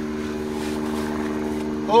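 A motor running steadily: a low, even hum of several tones that holds without change.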